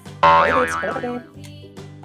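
A cartoon 'boing' sound effect starting suddenly about a quarter second in, its pitch wobbling up and down for about a second, over children's background music with a steady beat.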